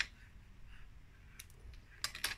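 Faint handling of small paper pieces on a cutting mat: a short crisp crackle right at the start and two faint ticks about one and a half seconds in, over quiet room tone.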